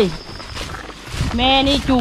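A woman talking in a conversational voice, with a pause of about a second in the middle.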